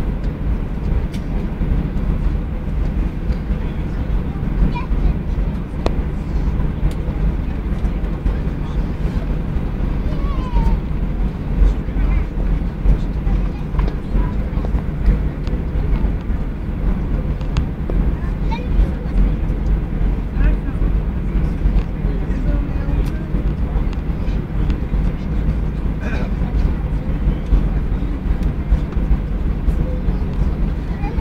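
Steady low rumble inside the cabin of an Airbus A321-211 taxiing on the ground, its CFM56 engines at idle.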